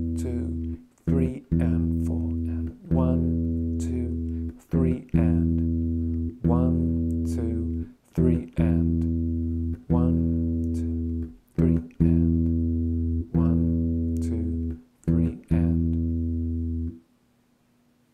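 Bass guitar repeating a single fretted E, second fret on the D string, in a 'one, two, three-and' rhythm: two held notes and then two short quick ones, the pattern coming round about every three and a half seconds. The playing stops about a second before the end.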